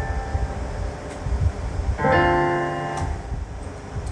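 Piano-voiced chords played on a Roland JUNO-DS synthesizer keyboard. One chord fades out, and a new one is struck about two seconds in and rings down slowly.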